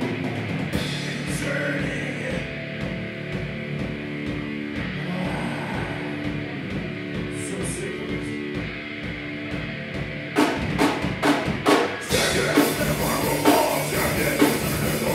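Live heavy metal band playing an instrumental passage: guitars and bass hold a low, sustained riff over a steady drum pulse. About ten seconds in, loud drum hits and cymbal crashes come in, and the full band drives on louder.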